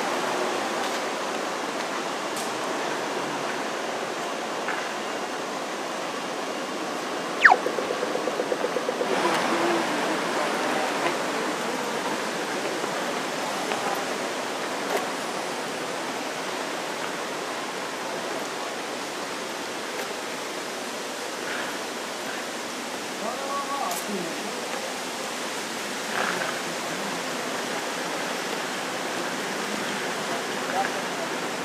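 Inner-city street ambience: a steady hiss of distant traffic with faint, indistinct voices. About seven seconds in, a sharp sound is followed by a quick rattle lasting a second or so.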